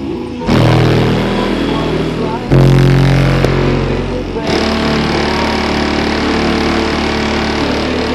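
Bass-heavy music played loud through a car's GiGLZ 15-inch Mofo subwoofer, heard from outside the car. The bass kicks in about half a second in and steps up louder about two and a half seconds in.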